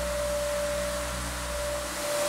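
Six-inch random-orbital floor sander with four discs running steadily on a hardwood floor, a constant whine over a low hum, its coarse 36-grit paper stripping the old finish.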